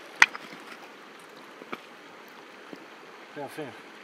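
Steady rush of river water, with one sharp click just after the start and a few faint ticks.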